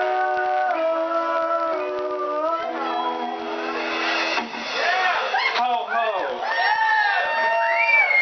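An acoustic band's song ending on held final notes over acoustic guitar and keyboard. About four and a half seconds in, the music stops and the audience whoops and cheers.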